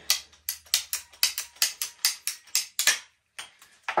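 Hand ratcheting pipe cutter clicking as its handle is squeezed repeatedly to cut through white PEX tubing, about four clicks a second, stopping about three seconds in, with a few fainter clicks after.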